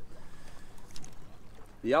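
Water lapping against a small boat's hull, with a faint tap about a second in. A man's voice starts just before the end.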